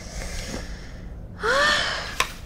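A woman's breathy exhale of frustration, then a short wordless voiced groan with a rise-and-fall in pitch about one and a half seconds in.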